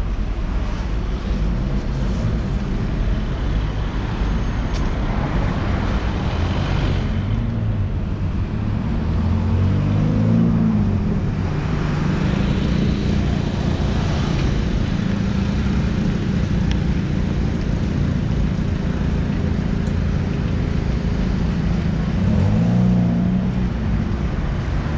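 City street traffic: cars and vans driving past, with engine hum rising and falling in pitch as vehicles pass and pull away, most noticeably about ten seconds in and again near the end.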